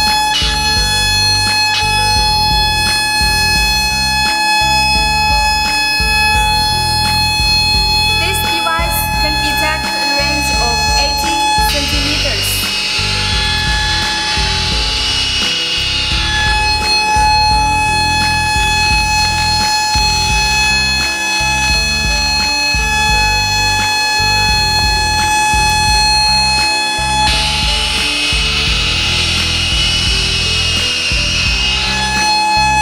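Wire tracer receiver probe giving a steady high-pitched tone as it picks up the tone generator's signal on the wire. The tone drops out about twelve seconds in and again near the end, and a hissing static takes its place each time. Background music plays underneath.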